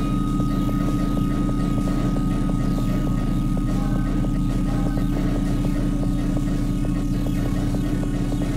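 Dense experimental electronic drone music: a steady low rumble with a fast, regular throbbing pulse, a sustained high tone above it, and a haze of faint ticking noise, with no break or change throughout.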